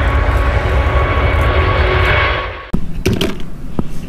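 Airbus A380's four jet engines at takeoff power: a loud steady rumble with a thin whine on top, which cuts off abruptly about two and a half seconds in. A few sharp clicks and knocks follow.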